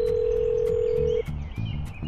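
Telephone ringback tone on an outgoing mobile call: a steady low beep that stops about a second in. It signals the line ringing at the other end before the call is answered.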